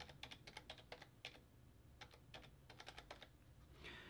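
Faint clicking of computer keyboard keys as an IP address is typed, in several quick runs of keystrokes with short pauses between them.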